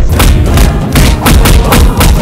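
A rapid run of loud punch and hit thuds, several a second, as dubbed-in fight sound effects.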